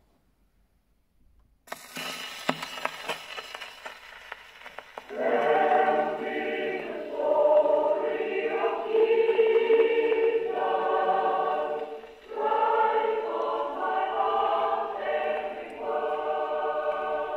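A worn 78 rpm record playing on an HMV 102 portable wind-up gramophone. Hiss and crackle from the record surface start about two seconds in, and from about five seconds in a Salvation Army songster choir sings a hymn, with a short break near twelve seconds.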